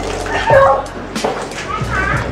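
A splash of water thrown onto a person, then a high-pitched shriek and laughter about half a second in, with another cry near the end.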